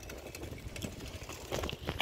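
Low rumble of wind and road noise on a phone microphone held by someone riding a bicycle, with light clicks and rattles. A few sharper knocks near the end as a hand handles the phone.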